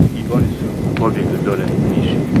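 Wind buffeting an outdoor microphone, giving a loud, rough rumble. Brief fragments of a man's voice break through it.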